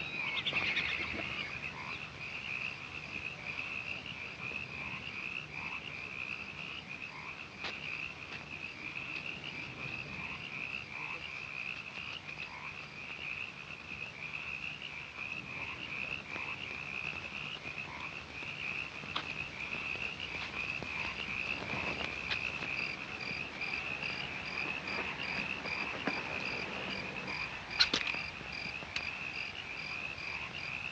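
Night chorus of frogs and insects: a steady, rapidly pulsing high trill. A single sharp click or snap comes about two seconds before the end.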